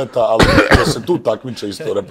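A man clears his throat with a short, loud cough about half a second in, between stretches of men's conversation.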